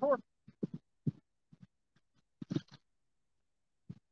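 A man's words trailing off, then a few short, faint, low murmurs and grunts spaced irregularly over the next few seconds.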